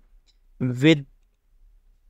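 A single spoken word from a man narrating, with quiet room tone around it; a faint computer-mouse click comes just before the word.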